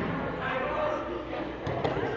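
Indistinct chatter of several children's and adults' voices echoing in a large gym, with a couple of short thumps near the end, typical of bodies and feet landing on exercise mats.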